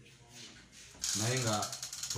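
A rapid clicking rattle starts suddenly about a second in and runs on under a man's voice.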